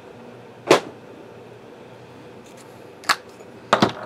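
A few sharp knocks or clicks over quiet room tone: one loud one about a second in, a lighter one about three seconds in, and a quick pair just before the end, from objects handled on a tabletop.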